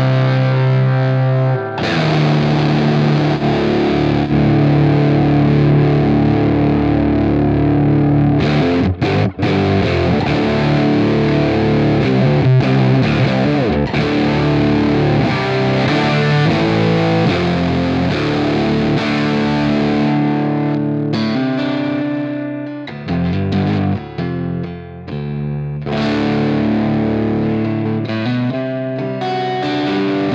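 Electric guitar through a fuzz pedal into a Universal Audio OX Amp Top Box with a 4x12 cabinet emulation, playing long distorted chords and notes that break into choppier, stop-start phrases about two-thirds of the way through. The top end turns fizzy and sibilant, which the players put down to a buffer placed after the fuzz pedal.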